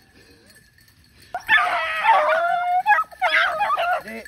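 Beagle-type rabbit hound baying while running a rabbit: one long drawn-out bay about a second and a half in, then a shorter one near the end.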